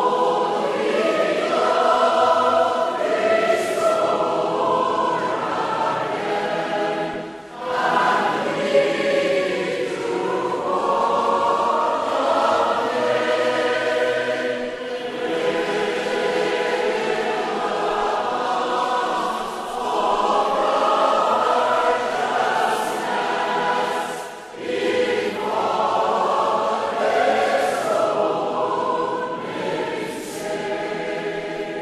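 A choir singing a hymn in harmony, in long held phrases with short breaks about seven and a half and twenty-four and a half seconds in.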